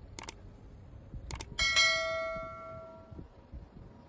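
Subscribe-button sound effect: a mouse click near the start and another about a second later, then a bright bell chime that rings out and fades over about a second and a half.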